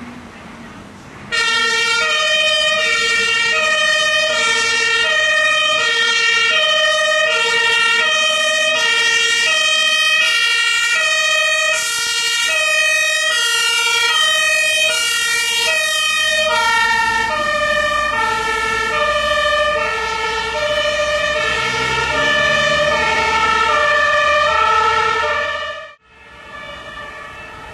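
German two-tone Martinshorn siren on an Iveco Magirus TLF 24/50 fire engine, switched on about a second in. It then sounds loud and steady in its alternating high-low pattern, signalling an emergency run, with the truck's engine rising beneath it near the end.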